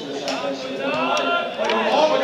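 Voices calling out and talking across a football pitch during play.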